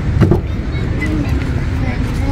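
A car door being opened, with a single knock of the latch about a quarter second in, over a steady low rumble; a faint voice follows.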